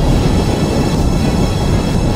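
Wind buffeting a paraglider pilot's camera microphone in flight, heard as a loud, steady low rumble.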